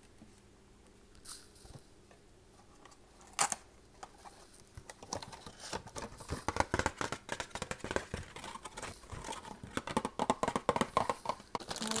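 A cardboard box and its packaging being torn and crumpled by hand: two short isolated tearing sounds in the first few seconds, then dense, continuous crinkling and crackling from about five seconds in.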